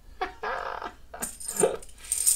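A short voice-like sound, then silver half dollars clinking together about a second and a half in as they are poured from one hand into the other.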